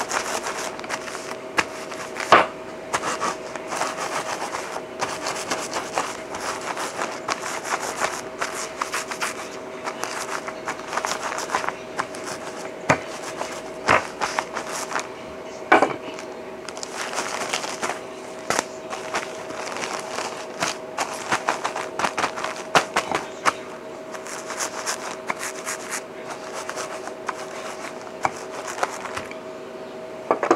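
Wooden rolling pin rolled back and forth over a zip-top plastic bag of freeze-dried raw egg, crushing the dry egg into powder: continuous crackling and crinkling with frequent sharp clicks. A steady hum runs underneath.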